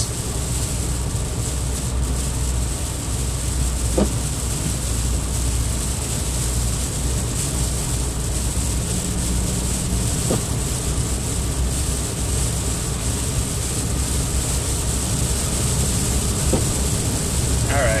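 Steady in-cabin road noise of a car driving on a wet, slushy highway: tyre hiss from the wet pavement over a low engine and road hum.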